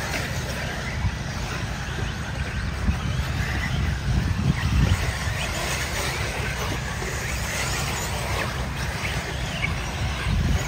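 Electric RC buggies racing on a clay off-road track, heard at a distance as light scattered clatter and tyre noise over a steady low rumble.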